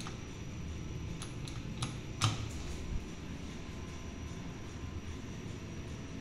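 Elevator hall call button pressed, then a steady low hum with several sharp clicks and one louder clunk about two seconds in, typical of lift machinery answering the call.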